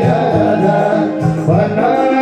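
Live Nepali lok dohori song: a man sings a held, bending melodic line into a microphone over a band with drums and plucked strings.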